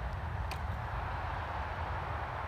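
Steady low outdoor rumble and hiss, with one faint, sharp snap about half a second in as a balsa catapult glider is released from its stretched rubber-band launcher.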